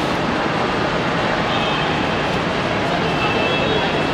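Steady, loud background noise of a busy airport drop-off forecourt: traffic and indistinct voices blended into an even din.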